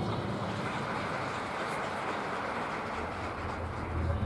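The drum corps' music dies away at the start, leaving a pause filled by steady open-air stadium ambience, an even rushing noise with no distinct notes.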